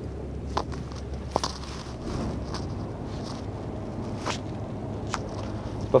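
Heavy truck's engine running low and steady, heard from inside the cab, with a few light clicks and knocks scattered through it.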